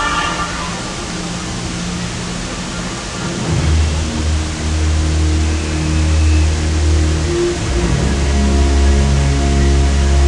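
The Magic Fountain of Montjuïc's water jets and spray rushing steadily, with the show's music playing over it. A higher tone fades out in the first half second, and deep sustained bass notes come in about three and a half seconds in.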